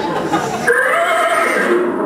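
A man imitating a horse's whinny with his voice: one long, wavering neigh.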